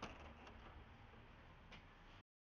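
Near silence: faint background hiss with a faint click at the start and another near the end.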